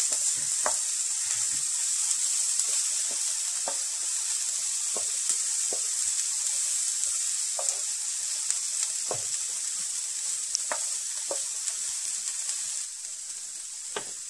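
Diced onions, garlic and ginger sizzling in butter on a flat griddle pan, with scattered taps and scrapes from a wooden spatula stirring them. The sizzle drops a little near the end.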